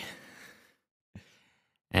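A man's breath between sentences: the end of a word fades out, then a small mouth click and a soft in-breath just before he speaks again.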